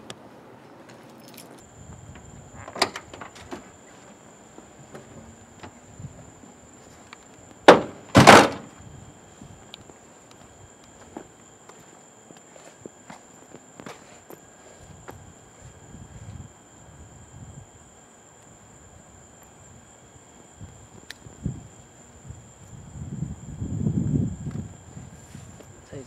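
Two car doors slamming shut about half a second apart, the loudest sounds here. Behind them is a steady high-pitched insect drone.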